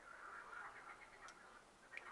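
Near silence: faint room hiss with two small clicks, one about a second in and one near the end, from the camcorder's control buttons being pressed.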